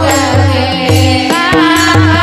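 A woman sings a Marathi gavlan, a devotional folk song about Krishna, into a microphone. Regular drum beats and percussion keep the rhythm under her voice.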